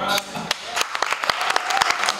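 Scattered applause from a small audience at the end of a live jazz number: separate hand-claps, with the band's final note dying away in the first moment.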